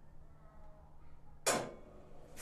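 Wheel balancer finishing a check spin: a low steady hum, then a single sharp clunk with a short ring about one and a half seconds in as the spin ends and the machine shows its imbalance readings.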